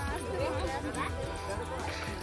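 Several people chattering at once, with background music underneath.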